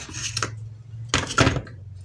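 Knocks and a brief clatter of the plastic rice cooker casing and parts being handled during reassembly, the loudest clatter about a second in, over a steady low hum.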